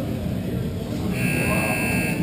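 Rink scoreboard buzzer sounding one steady electronic tone, starting about a second in, over the murmur of voices and play in the rink.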